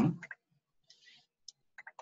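Computer mouse button clicking a few times, with a quick double click near the end.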